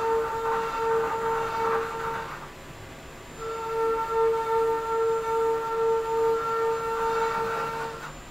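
CNC mill end mill ramping down into the inside of a metal part under flood coolant, cutting with a steady, high whine that swells and fades a little. The whine stops a little past two seconds in and resumes about a second later as the tool re-engages.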